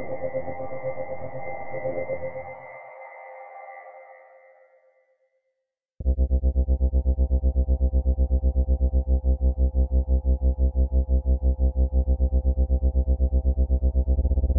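Sample-library atmosphere patches played in FrozenPlain's Mirage sampler. A layered tonal 'Abstract Energy' pad fades away over the first few seconds. After a moment of silence, a dark, distorted 'Feedback Loops' drone starts suddenly about six seconds in and pulses rapidly, several times a second, at a steady level.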